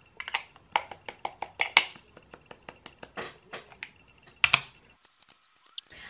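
Makeup products being handled on a table: a string of light, irregular clicks and taps from compacts, cases and brushes being set down and picked up, then a brief hush near the end.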